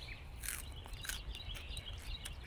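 Small birds chirping faintly in the background, a cluster of short chirps in the first second, over a low steady rumble.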